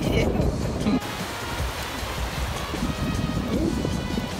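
Small waves washing on the shore under soft background music. For the first second wind rumbles on the microphone, then it cuts off abruptly and the surf and music carry on more quietly.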